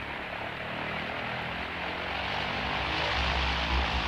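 Propeller aircraft engines droning, growing steadily louder, with a deep rumble coming in about three seconds in.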